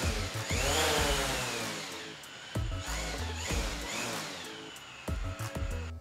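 DJI Mavic Pro's four propeller motors spinning up on the ground into a whine and winding down again, twice. The drone stays on the table and does not take off.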